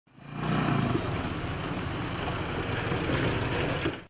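A motorcycle engine running steadily, fading in over the first half second.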